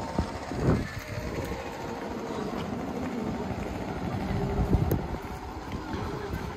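Town street ambience: a steady low rumble, swelling slightly about five seconds in.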